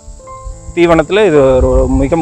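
A person speaking, starting again after a short pause about three-quarters of a second in, over a faint steady high-pitched hiss.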